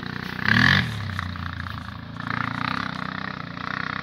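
ATV engine running steadily, with a brief louder burst about half a second in and the engine note swelling for about a second around two seconds in.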